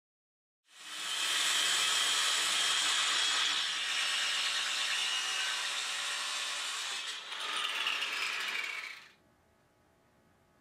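A power tool running steadily with a loud, hissing whir. It starts abruptly about a second in, dips briefly near the end and then cuts off.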